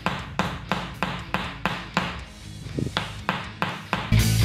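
Wooden Tok Sen mallet striking a wooden wedge held against the back of the neck and shoulders: rhythmic, even taps about three a second. The mallet and wedge are tamarind wood.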